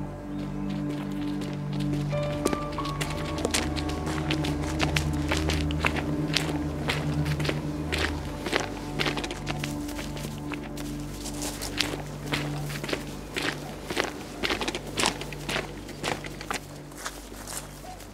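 Footsteps on a dirt track, starting about two seconds in and growing more frequent and regular, over slow background music holding low, sustained notes.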